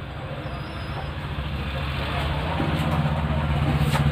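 Motor vehicle engine running, growing steadily louder with a low rumble and loudest near the end.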